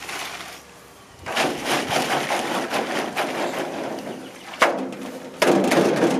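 A bundle of paper cracker tubes rustling and splashing as it is dunked and worked in a shallow metal tray of red dye, starting about a second in, with two sharp knocks near the end.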